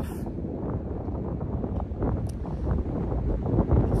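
Wind buffeting the microphone outdoors, a steady gusty rumble.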